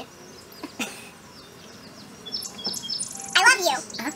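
A songbird singing a run of quick, high chirping notes about halfway through, followed near the end by a short burst of a person's voice.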